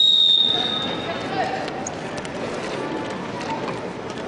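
Wrestling referee's whistle, one long steady blast of about a second that starts the period's clock running, over the murmur of voices in a sports hall.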